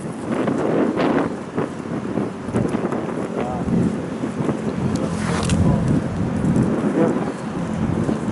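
Wind buffeting the camera's microphone outdoors, a steady rumbling noise with uneven gusts.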